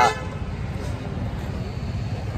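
Street traffic: a steady low rumble of road vehicles, with a faint distant vehicle horn sounding.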